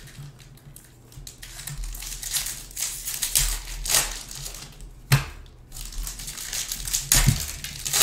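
Foil wrapper of a Bowman baseball card pack being torn open and crinkled by hand, an irregular crackle with a couple of sharp clicks late on.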